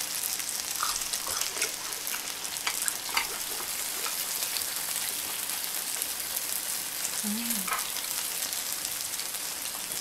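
Beef tripe and fatty large intestine (yang-daechang) sizzling on a ridged griddle pan: a steady frying hiss with scattered small crackles and pops of spattering fat.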